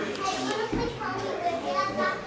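People's voices talking indistinctly, with no words clear enough to make out.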